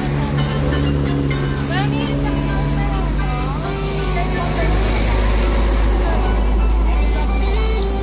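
Music and voices over a steady low rumble of road traffic, the rumble swelling for a couple of seconds past the middle as a heavier vehicle goes by.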